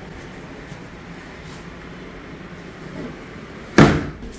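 Quiet room tone, then the heavy plastic lid of an Icy Breeze cooler shutting with a single short thump near the end.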